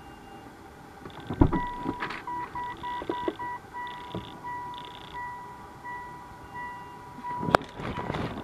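Mitsubishi Outlander PHEV's power tailgate warning buzzer beeping after the dash switch is pressed: a run of quick beeps, then longer evenly spaced ones, while the tailgate moves. It ends with a sharp click near the end.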